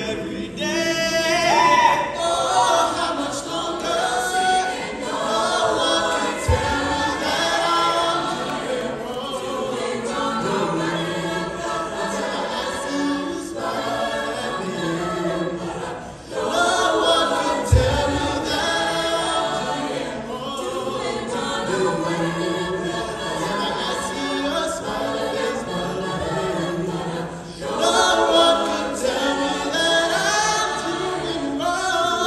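Mixed choir singing a pop song in harmony, in several vocal parts, with two brief dull low thumps partway through.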